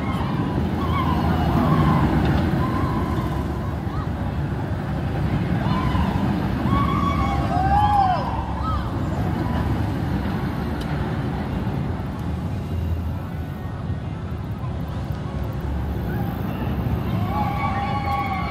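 Steel looping roller coaster train running along its track, a steady rumble throughout. Short distant shouts from voices come and go over it, the loudest about eight seconds in.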